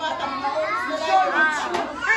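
Young children's high voices calling and chattering, with other people talking.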